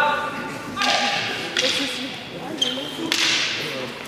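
Chestnut-wood fighting canes swishing through the air in a canne de combat exchange: three quick whooshes about a second apart, with a short high squeak between the last two.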